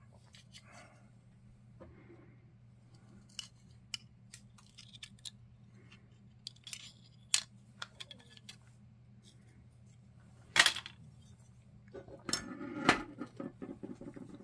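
Small clicks and clinks of a die-cast metal toy cap gun frame and a screwdriver being handled on a workbench, with one louder knock about ten and a half seconds in and busier clattering near the end, over a steady low hum.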